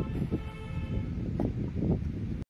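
A held horn note made of several tones fades out within the first second, over a steady low rumble like wind, with a few dull thuds.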